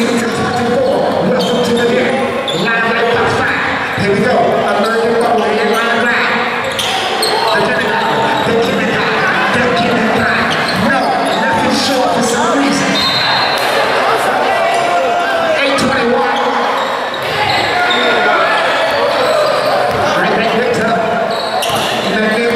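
Basketball game in a large gym: a ball dribbled and bouncing on the hardwood floor, with indistinct voices of players and onlookers calling out and talking throughout.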